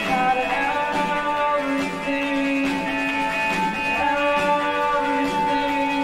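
Indie rock band playing an instrumental passage, led by electric guitar with long, sustained ringing notes.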